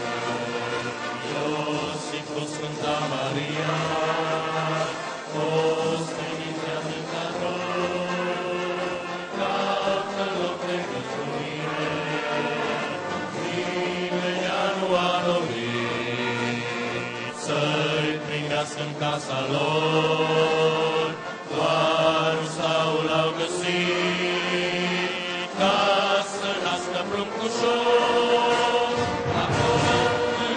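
Congregation singing a Romanian Christmas carol together, with a brass band accompanying, in slow, long-held notes.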